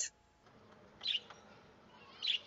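A small bird chirps once, short and high-pitched, about a second in, over faint room tone.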